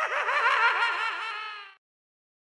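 A high-pitched giggling laugh, its pitch bouncing up and down several times a second, which stops abruptly shortly before the end.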